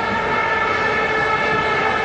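Stadium crowd noise dominated by a steady drone of many plastic horns (vuvuzelas) blown together on several held pitches, swelling slightly.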